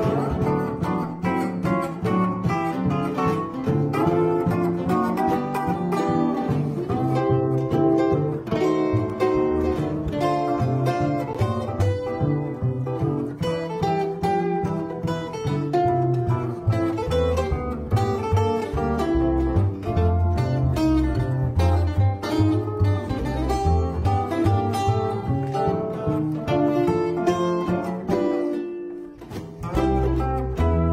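Instrumental break played live by a steel guitar, an archtop guitar and a plucked upright bass, with no singing. The music thins out briefly near the end.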